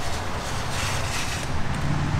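Steady outdoor background noise: a low hum under a broad hiss.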